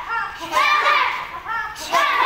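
Several children's high-pitched voices calling out short shouts, two bursts about a second apart.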